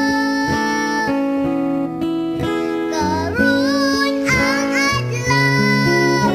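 Bisaya-language Christian worship song: a solo voice sings held, wavering notes over strummed acoustic guitar and a steady bass line.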